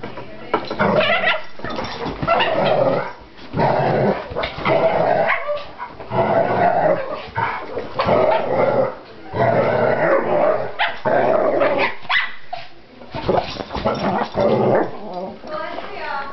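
Dogs play-fighting, growling in rough repeated bursts of about a second each with short breaks between them.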